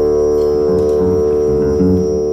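Live band music with electric guitar and strings: a held, droning chord, with a line of low notes moving underneath it from about half a second in.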